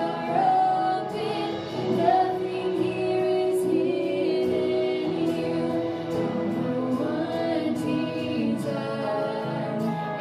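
Women singing a worship song, accompanied by a live band with guitar.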